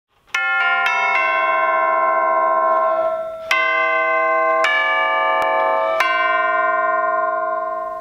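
Tubular orchestral chimes (Musser) struck with a pair of rolled-rawhide hammers, playing a short melody. Four quick strokes open it, then three more come about a second apart. Each bell-like note rings on and overlaps the next.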